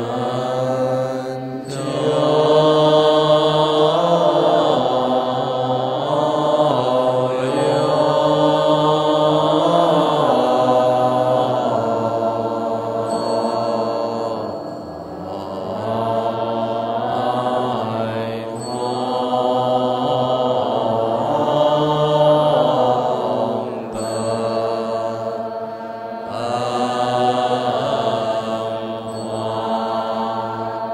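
A Chinese Buddhist monastic assembly chanting in unison, drawing out a single verse line of the morning-service dedication very slowly over long held, gently rising and falling notes. A few brief dips between phrases mark breaths.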